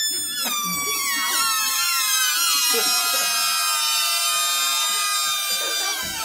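Several rubber balloons squealing at once as air escapes through their stretched, pinched necks. Many high tones overlap, most sliding down in pitch at first and then holding steadier.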